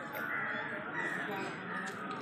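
Crows cawing several times over the chatter of a crowd.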